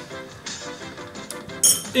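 Background music playing, with one sharp clink near the end as a metal teaspoon is set down in a ceramic bowl.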